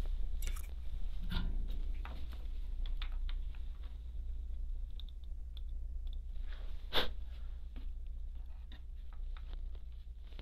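Close-up handling noises of fine wires being twisted and soldered: scattered light clicks and crackles, with one sharper click about seven seconds in, over a steady low hum.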